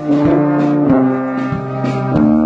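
Marching brass band of sousaphone, euphoniums and tenor horns playing loud held chords that change every second or so.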